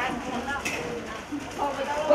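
Indistinct talk of several people in the background, with a short sharp click about two-thirds of a second in.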